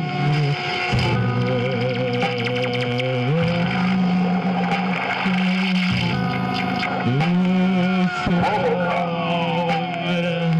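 Live experimental electronic improvisation: layered electronic drones that shift pitch in steps, with a wavering tone over them and scattered clicks. Slow falling glides enter near the end.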